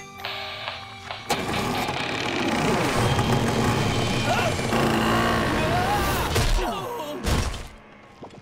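Cartoon action-scene soundtrack: background music with sudden impact sound effects, one about a second in and another near the end.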